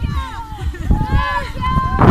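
Several children and adults talking and calling out at once in overlapping, high-pitched voices, over a steady low rumble.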